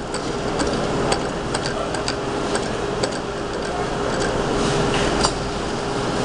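Claw machine in play: a steady hum from the machine with irregular light mechanical clicks, about one or two a second, over the background noise of a busy store.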